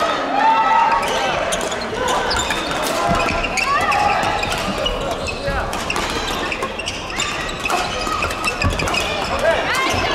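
Badminton rally: sharp racket hits on the shuttlecock and shoes squeaking on the court floor, many short squeaks and clicks over the chatter of players on other courts.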